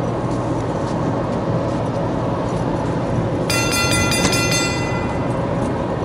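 Steady low mechanical drone, from the engines of a large ship berthed at the harbour. About three and a half seconds in, a high ringing sound of several tones cuts in for under two seconds.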